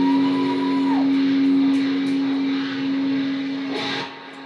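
Distorted electric guitar holding one long sustained note. A higher overtone swells in and fades about a second in, and the note is cut off sharply just before the end.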